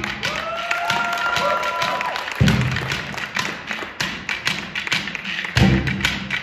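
Percussion ensemble in a drum circle playing quick light tapping on hand percussion, with several overlapping high tones that rise and then hold in the first two seconds. A single low drum hit comes about two and a half seconds in, and loud low drum strokes come in near the end.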